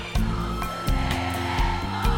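Live sertanejo band playing an instrumental passage between vocal lines, with held bass notes and a steady drum beat, and crowd noise underneath.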